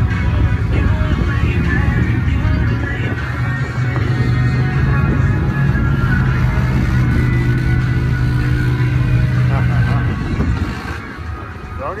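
Engine of a lifted Ford pickup running with a steady low drone as the truck creeps forward at walking pace, easing off about ten seconds in.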